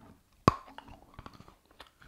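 A very hard piece of white chocolate bar being bitten and chewed: one sharp crack about half a second in, then a run of small crunching clicks.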